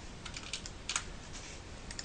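A few light, scattered clicks of a computer mouse and keyboard as objects are selected on screen, over a faint steady hiss.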